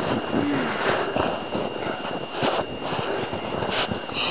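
Snow crunching and snowsuit rustling as a child crawls on his belly through a packed-snow tunnel, an irregular run of small scrapes and crunches, with a short vocal sound about half a second in.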